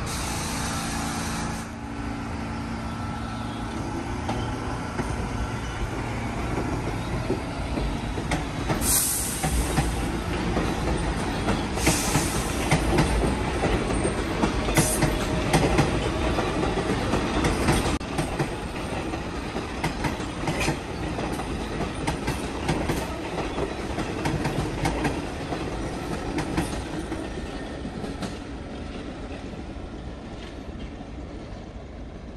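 Subway train running past on the tracks, a steady rumble with wheels clicking over rail joints and a brief high wheel squeal about nine seconds in. It is loudest in the middle and eases off toward the end.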